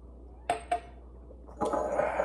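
Two quick glass clinks about a quarter second apart, a small drinking glass being set down. Near the end a longer, noisier sound begins.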